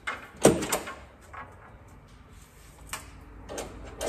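Steel fold-down table on a Jeep tailgate being handled and latched: a quick pair of loud metallic clacks in the first second, then a lighter click and a knock towards the end.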